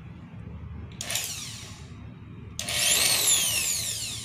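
Small corded electric drill, running off a UPS inverter fed by a DIY lithium battery pack, briefly pulsed about a second in and then run again for over a second. Its motor whine rises each time and winds down as the trigger is released.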